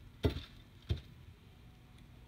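Two brief soft knocks, a little over half a second apart, from pliers and fingers gripping a beading needle to pull it through a tight bead.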